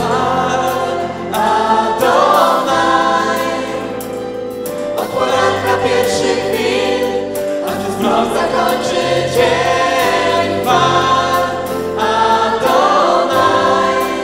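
Live Christian worship song: a woman and a man singing together, accompanied by acoustic and electric guitars.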